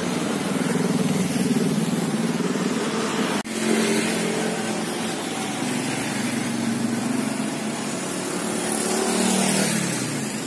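Street traffic: a motor vehicle engine running close by with a steady hum, cutting out for an instant about three and a half seconds in and swelling slightly near the end.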